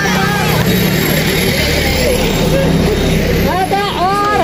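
Several women's voices talking over one another in a small gathering, with a steady low rumble underneath; a loud voice starts up again near the end.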